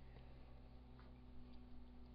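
Near silence: room tone with a faint steady electrical hum and two faint ticks, one at the start and one about a second in.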